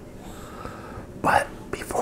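Close-miked man's voice at whisper level. There is a short, sharp noisy sound a little over a second in, and whispered speech begins near the end.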